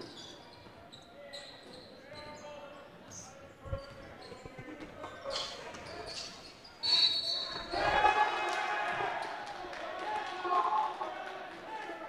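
Basketball game sound in a gym hall: a ball dribbled on the hardwood floor with scattered thuds, then a referee's whistle about seven seconds in for an offensive foul, followed by a burst of crowd and player voices.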